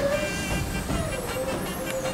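Soft background music with faint held notes over a low, steady rumble.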